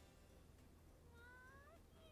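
Near silence, with one faint high-pitched call rising in pitch in the second half.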